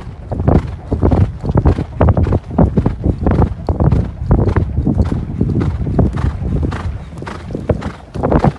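Ridden horse cantering on a heavy sand track: hoofbeats thudding into deep sand in a steady stride rhythm, about three strides every two seconds, easing slightly near the end.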